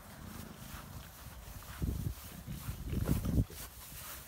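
Footsteps and rustling on a grass lawn, with a steady low rumble and a few low thuds about two seconds in and again around three seconds in.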